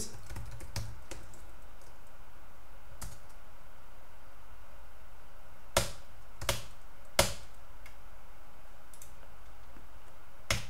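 A computer keyboard struck a few separate times, with single sharp key clicks spread apart and the three loudest about six to seven seconds in, over a steady low background noise.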